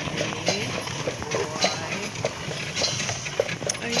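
Carriage horse's hooves clip-clopping at a walk while pulling a carriage, an even beat of a little under two hoof strikes a second.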